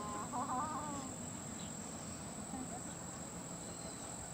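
A distant rooster crowing once, briefly and with a warble, in the first second, over a steady high-pitched hiss.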